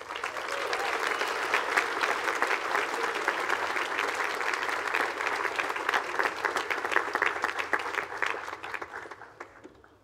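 Audience applause, beginning right away and holding steady for about eight seconds, then dying away in the last second or two.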